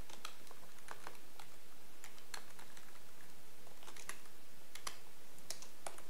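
Computer keyboard keystrokes: an irregular scatter of key presses with short pauses between them, over a steady background hiss.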